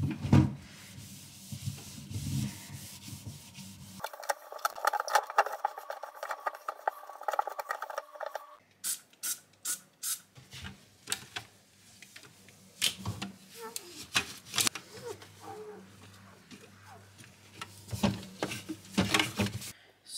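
Fridge cleaning: a sponge rubbing and wiping a plastic drawer and glass shelves, with short squirts from a trigger spray bottle and knocks of handled parts.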